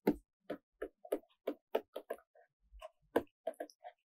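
Stylus tip tapping and clicking on a pen tablet during handwriting: a run of short, sharp, irregular clicks, a few per second.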